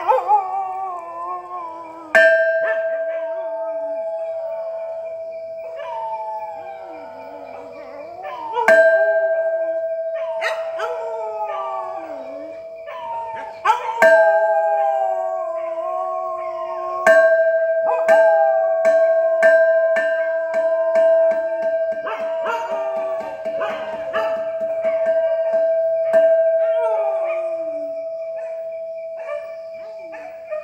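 A hanging cylindrical Thai temple bell struck with a mallet, each strike leaving one long steady ringing tone with a higher overtone; the strikes come several seconds apart at first, then in a quick run of strokes in the second half. Dogs howl along with the bell throughout, their pitch gliding up and down.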